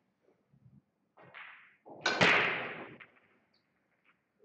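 A sharp crack of pool balls striking about two seconds in, ringing and fading over about a second. A fainter knock comes just before it.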